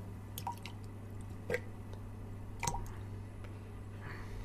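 Water dripping: three slow drops about a second apart, over a low steady hum.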